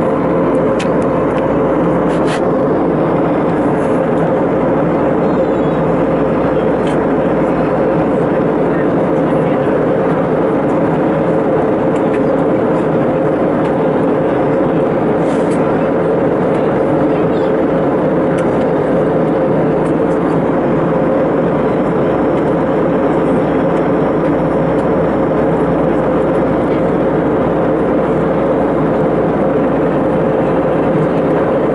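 Steady airliner cabin noise at altitude, heard inside the cabin: a constant rush of airflow and jet engine drone with a steady hum, unchanging throughout.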